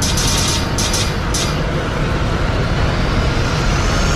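Cinematic logo-intro sound design: a steady deep rumble under a dense noisy wash, with shimmering high sweeps in the first second and a half and a faint tone rising slowly toward the end.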